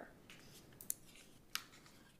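A quiet pause in a small room, with two faint, sharp clicks of handling noise near a table microphone, one about a second in and another about half a second later.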